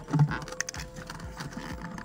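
Light clicks and knocks of hands working the lid of a plastic bucket to open it.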